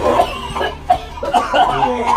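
Men laughing, with bits of talk and a short cough-like burst of breath.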